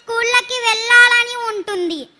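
A young girl singing into a handheld microphone, holding long, steady notes; the last note slides down in pitch near the end.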